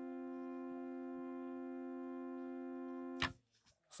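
Casio mini electronic keyboard sounding a sustained held tone at steady pitch, its loudness wavering slightly and regularly. It cuts off abruptly about three seconds in, followed by a brief click.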